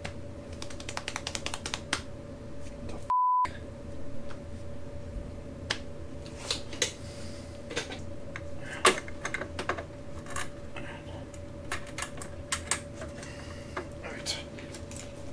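A short beep that mutes everything else about three seconds in: a censor bleep over a curse. Around it come scattered light clicks and taps from electrical wires, connectors and small metal parts being handled, over a faint steady hum.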